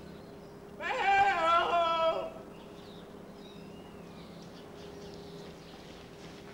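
A single drawn-out, wavering call lasting about a second and a half, starting about a second in, over a faint steady hum.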